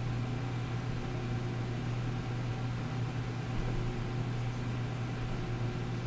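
Steady machine hum with an even hiss, heard inside the gondola of a flight-training centrifuge that keeps turning at its low resting speed of about 1.5 G between runs.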